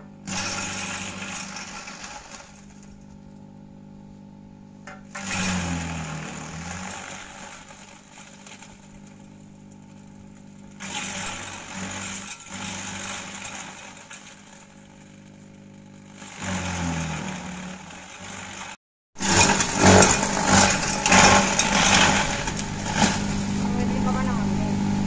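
Electric compost shredder (Kelani Compostha KK100) running with a steady motor hum, broken about five times by a few seconds of loud chopping as gliricidia branches are fed into it. The hum sags in pitch while a branch is being cut. The last and loudest burst of shredding comes just after a brief break.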